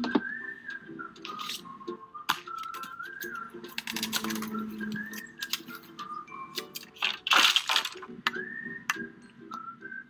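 A whistled tune over a light music track, broken by sharp snapping clicks of Fiskars loppers cutting through bamboo stems, with a loud crunch about seven seconds in as a stem gives way.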